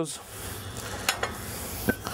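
Steady sizzling hiss of corn cooking on an open grill, with a couple of light knocks, about a second in and near the end, as a platter is picked up.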